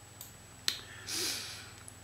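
A single sharp click a little over half a second in. About a second in comes a short, soft hiss of breath, a man inhaling before he speaks.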